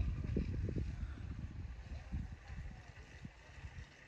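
Wind buffeting the microphone outdoors: irregular low rumbling gusts, strongest in the first second and easing off afterwards.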